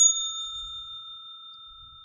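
A single bell-like chime struck once, ringing on and fading away slowly.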